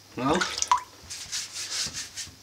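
Hands rolling a ball of potato dumpling dough between the palms: a few soft rubbing strokes in the second half.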